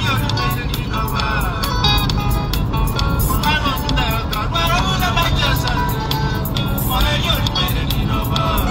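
A song: a singer's voice over instrumental backing.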